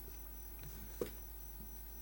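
Low, steady electrical mains hum from the room's sound system, with one soft click about a second in.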